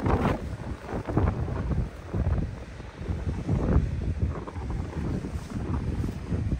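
Blizzard wind gusting and buffeting the microphone in uneven, rumbling gusts.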